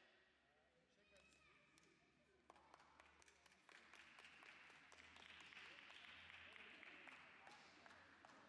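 Faint, distant applause and scattered clapping that swells about four seconds in and dies away near the end, with faint voices underneath.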